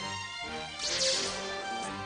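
Film trailer music with sustained chords, joined about a second in by a short, high hissing sweep of a sound effect that falls away quickly.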